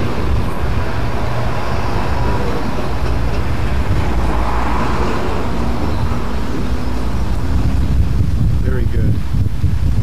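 Steady low rumble of outdoor background noise on the camera's microphone, with wind and distant traffic mixed in and no distinct events.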